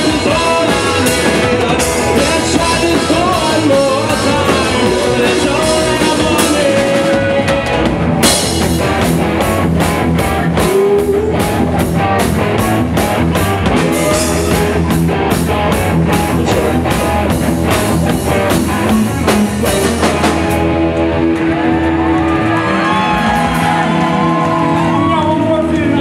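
Live alternative-rock band playing: distorted electric guitars, electric bass and drum kit, with singing. About eight seconds in, the drums and cymbals come in harder. Near the end the cymbals drop out and held guitar chords ring on.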